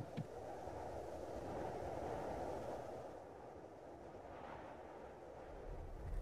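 Faint low rushing noise that swells over the first two or three seconds, then fades.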